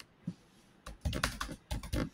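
Typing on a laptop keyboard: a single key tap, then a quick run of keystrokes from about a second in.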